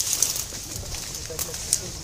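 Leaves and stems brushing and snapping in short clicks as someone pushes through dense undergrowth, over a steady high hiss, with a few faint short calls about halfway through.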